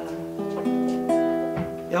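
Acoustic guitar playing the last notes of a song, with new notes picked about half a second and a second in, ringing and fading.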